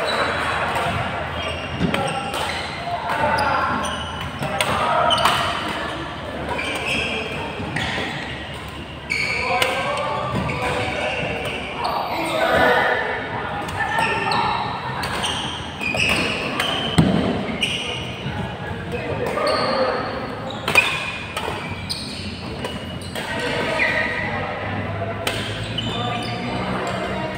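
Background chatter of many voices in a large, echoing sports hall. Sharp knocks of badminton rackets hitting a shuttlecock come at irregular intervals, with two louder hits late on.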